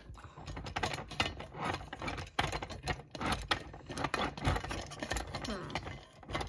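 Rapid, irregular light clicks and rattles of a toy train dump car's metal bin and frame being handled and moved.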